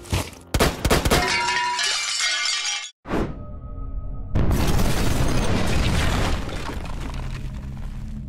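Channel intro sting: music layered with crashing, shattering sound effects. It cuts out suddenly about three seconds in, then a heavy hit comes in and rings on, slowly fading.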